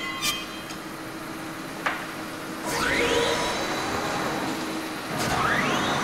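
Factory-floor machinery running, a steady hum with a couple of sharp knocks. About three seconds in, a machine's motor spins up with a rising whine that levels off into a high steady whine, and another rising whine starts near the end.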